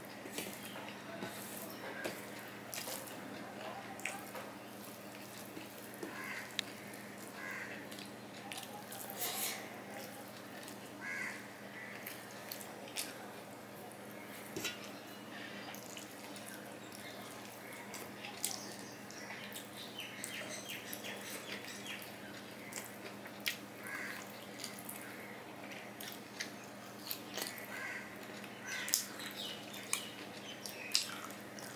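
Close-up eating sounds: fingers mixing and squishing rice and curry on a stainless steel plate, with wet chewing and lip smacking. Many small irregular clicks and smacks, over a steady low hum.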